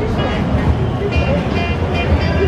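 Busy street sound: people's voices and music over steady traffic noise.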